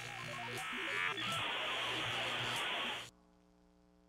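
Electronic glitch sound effect: a quick run of stepped beeps over buzzing static, turning into a steady harsh buzz that cuts off suddenly about three seconds in, leaving a faint tone that fades away.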